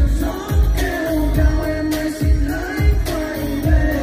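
Vietnamese pop song with singing over a heavy bass beat, a kick about every three quarters of a second.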